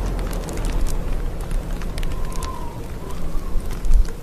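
Sound-effects bed: a steady low rumble under a crackling hiss full of sharp ticks, with a faint held tone in the middle and a louder low thump near the end.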